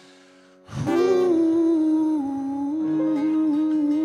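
A live singer's long held hummed note, entering loudly under a second in after a brief quiet moment and wavering slightly in pitch, over a soft guitar accompaniment at the close of a song.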